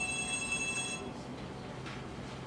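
A steady, high electronic tone, several pitches sounding together, lasting about a second, then a single short click near the end over room noise.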